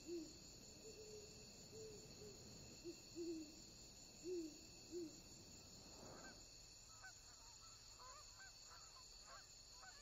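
Faint owl hooting, a series of short hoots over the first five seconds. Then, from about six seconds in, a flock of geese honking.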